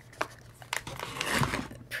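Plastic snack bag crinkling as it is handled close to the microphone: irregular crackles and rustles, which the speaker herself calls a horrible sound.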